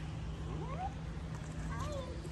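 Two brief gliding, meow-like calls, one about half a second in and one near the end, over a steady low hum.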